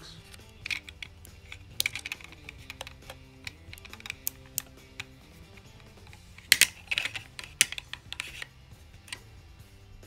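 Hard plastic clicks and snaps from handling the battery compartment of a Carlson BRX6+ GNSS receiver: a SIM card pushed into its slot until it clicks, then the compartment door swung shut. The clicks come in a cluster about two seconds in and again about six and a half to eight and a half seconds in, where the loudest snaps are.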